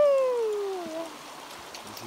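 A girl's single drawn-out vocal cry, a little over a second long, sliding down in pitch, as she climbs out of cold creek water.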